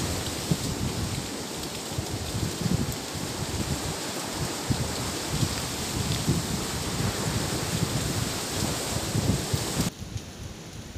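Wind buffeting the microphone: a steady rushing noise with irregular low rumbling gusts. It drops away suddenly near the end.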